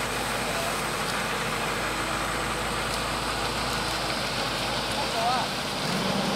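Aircraft tow tractor's engine running steadily while coupled to a Boeing 757's nose gear, with a brief distant voice near the end.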